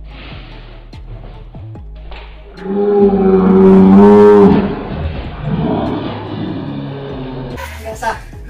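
A loud, long cry held steady for about two seconds from about two and a half seconds in, wavering near its end, over steady background music.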